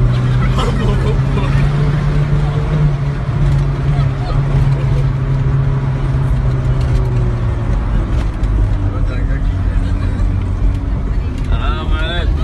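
Old passenger van's engine labouring in low gear up a steep hill, heard from inside the cabin as a loud steady drone whose pitch drops about eight seconds in. Frightened passengers cry out briefly near the start and near the end.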